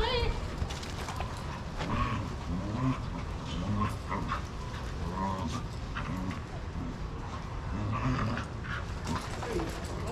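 Shelter dogs play-wrestling, with short, low, wavering vocal sounds and scattered light scuffles and clicks. Faint human voices sit in the background.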